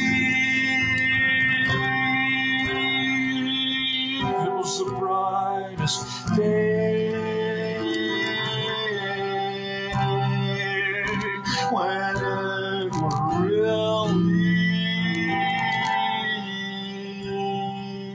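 A man singing long held notes that change pitch every few seconds, with some sliding notes past the middle, over a sustained instrumental accompaniment.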